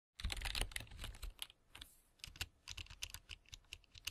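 Typing on a computer keyboard: irregular runs of keystroke clicks, with a brief pause a little before halfway.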